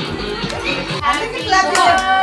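Background music with a beat that gives way about halfway through to young children's voices calling out.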